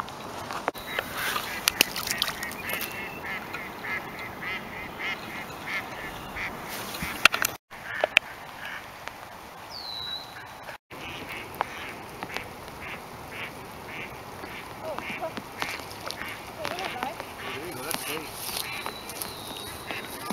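Ducks quacking in runs of short, repeated calls, with a steady background of light rain.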